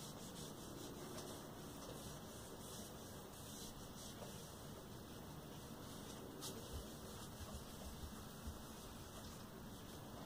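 Faint rubbing of a cloth wiping Tru Oil onto a roasted maple guitar neck, with a few light knocks in the second half.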